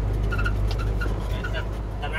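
Truck engine running with a steady low drone while driving slowly, heard from inside the cab.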